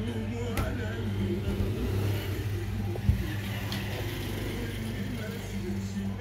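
An indistinct voice over a steady low electrical hum, with a sharp click about three seconds in.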